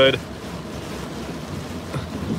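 Steady rushing noise of strong hurricane wind and heavy rain against a moving car, heard from inside the cabin.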